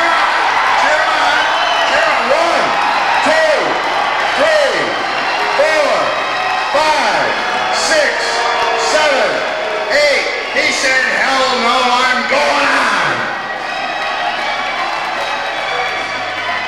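Fight crowd yelling and whooping at a boxing bout, many voices shouting over one another, with a couple of sharp knocks about halfway through.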